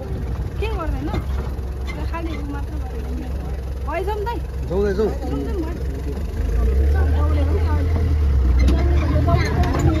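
An open safari jeep's engine idling, its low sound getting louder about six and a half seconds in, under quiet murmured voices.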